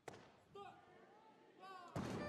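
A loaded barbell with bumper plates dropped onto the lifting platform near the end, one heavy slam, as a clean-and-jerk attempt is given up. Brief voice sounds come before it.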